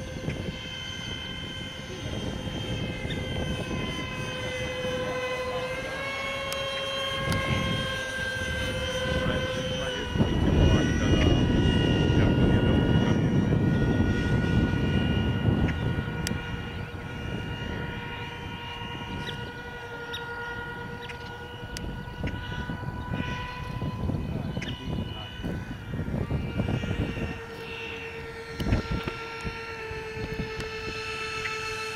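Twin 70 mm electric ducted fans of a radio-control A-10 model jet whining in flight, the tone shifting in pitch a few times with the throttle. A low rushing noise runs under it and is loudest from about ten to sixteen seconds in.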